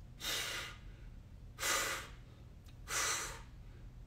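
A man breathing hard, three loud breaths spaced about a second and a half apart, while he holds a stick pressed overhead under muscular tension.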